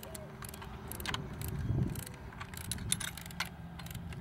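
Irregular light clicks and clinks from the blades and hub hardware of a small wind turbine being handled and fitted together, over a steady low rumble.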